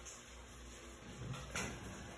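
Quiet room tone with a faint, brief knock or rustle about a second and a half in.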